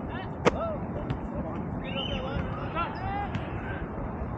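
Distant shouts and calls from players across an open field over a steady rushing background noise, with one sharp crack about half a second in.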